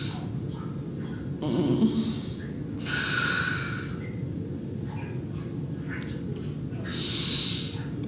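A person breathing audibly: three short breaths or sniffs with pauses between, over a low steady background hum.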